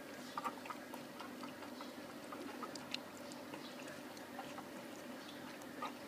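Puppies eating together: faint, irregular little clicks and smacks of chewing and lapping, over a steady low hum.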